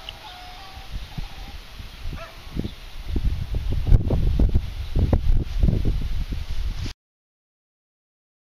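Wind buffeting the microphone in uneven low rumbles, stronger in the second half, before the sound cuts off abruptly into silence near the end.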